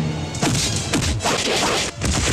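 Film fight sound effects: quick whooshing swings and punch impacts, several in fast succession from about half a second in.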